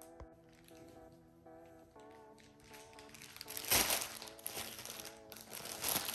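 Soft background music with held notes, then plastic wrapping crinkling from just past the middle onward, starting with a sharp burst and becoming the loudest sound.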